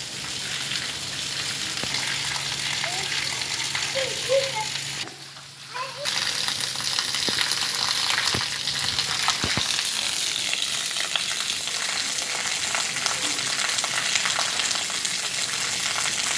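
Steady rain falling on a wet tiled courtyard, a constant hiss that drops away briefly about five seconds in.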